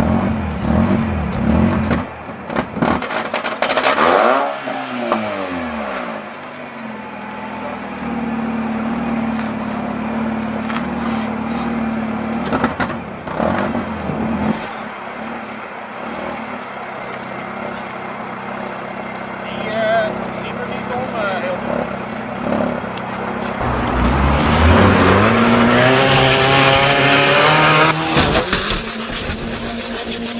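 Alfa Romeo 156 engine running, revved up and down about four seconds in and held steadier through the middle. It is revved hardest and loudest near the end.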